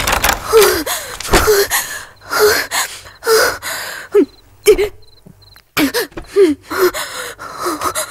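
A woman gasping and panting in fear, a quick series of short breaths, some with a voiced catch, broken by a brief silence about five seconds in.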